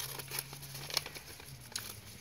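Brown paper bag being cut with scissors: the stiff kraft paper crinkles as it is handled, with a few faint snips scattered through.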